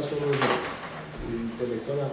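A man speaking Romanian, broken by a single sharp knock about half a second in.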